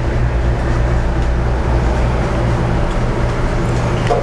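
Steady low machine hum with an even rushing noise over it, unchanging throughout.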